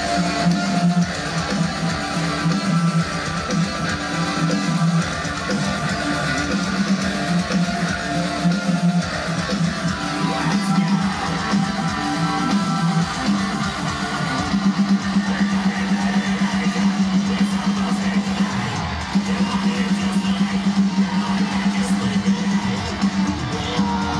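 Metalcore band playing live and loud: a guitar-led passage of electric guitars and bass, continuous and without a break.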